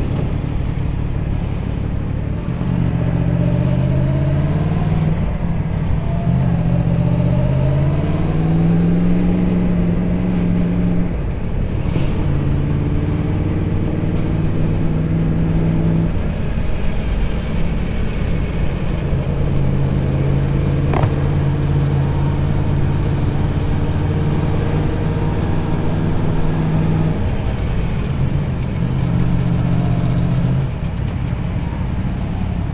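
Motorcycle engine pulling away and accelerating, its pitch rising in a few steps as it goes up through the gears over the first ten seconds or so. After that it runs at steady low revs, with road and wind noise throughout.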